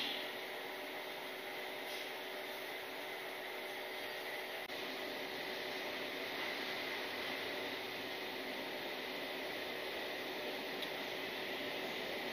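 Steady background hum and hiss of a railway station platform with trains standing at it, with no announcement or train movement.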